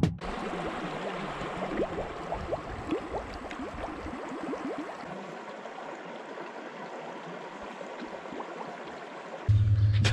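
A plastic bottle filling while held under water in a shallow stream: gurgling bubbles with many quick little chirping glides over the stream's steady rush, easing off gradually. A steady low hum cuts in just before the end.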